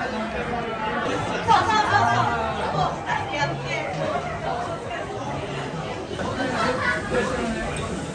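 Chatter of many voices in a busy indoor food hall, steady throughout, with no single voice standing out.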